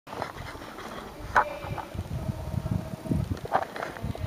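Muffled hoofbeats of a pony moving on the sand surface of an indoor riding arena, a run of dull thuds, with a sharp click about a second and a half in.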